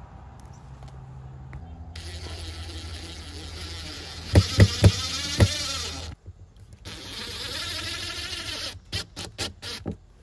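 DeWalt Atomic cordless driver running in bursts, driving Phillips screws through a plastic RV power inlet's flange into the coach wall. There are a few sharp knocks in the middle of the first run, and quick trigger pulses near the end as the screw is snugged down.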